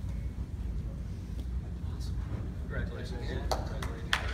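Steady low rumble of room noise in a hall. Faint murmured voices and a few sharp clicks come in during the last second or so.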